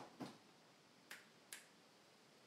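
Three short clicks in near silence, the first just after the start and two close together about a second later.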